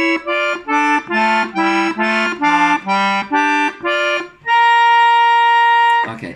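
Piano accordion playing a run of short two-note chords on its treble keyboard, about three a second, moving up and down in pitch. Near the end comes one long, louder held note.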